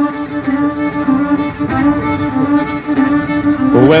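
Fiddle bowed on one long held note, steady and bright, with fainter notes moving above it. Near the end a few sharp hits come in.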